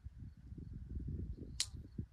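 Wind buffeting the microphone in uneven low gusts, with one brief, sharp high-pitched click or chirp about one and a half seconds in.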